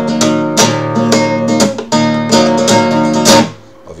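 Nylon-string classical guitar playing the introduction to a flamenco rumba pattern: about eight sharp plucked and strummed attacks in rhythm, each left ringing, then damped a little before the end.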